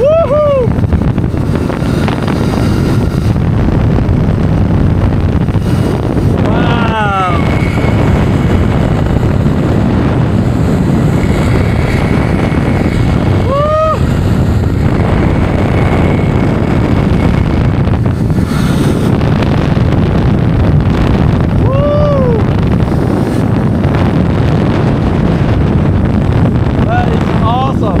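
Zip line ride at speed: a steady loud rush of wind on the microphone over the rumble of the trolley running along the steel cable. Several short rising-and-falling whoops from the rider break through it.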